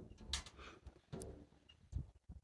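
Faint rustling and a few light clicks as a leather hiking boot is handled and its shoelace pulled up.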